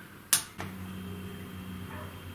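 A single sharp click, then a steady low hum with a faint high tone over it.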